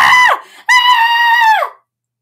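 A person's high-pitched scream: the tail of one cry at the start, then a second one held steady for about a second that drops in pitch as it trails off.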